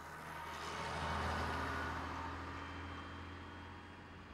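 Bus engine and tyres going past, loudest about a second in, then fading steadily as the bus drives off down the road.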